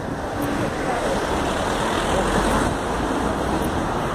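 Steady city street noise: a continuous rush of traffic with a low rumble of wind on the phone's microphone.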